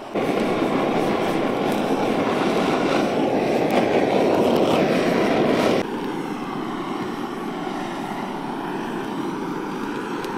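A loud, steady rushing noise that starts abruptly, drops to a lower level about six seconds in, and carries on to the end.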